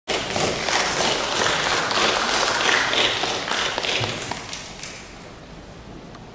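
Audience applauding, dying away about five seconds in.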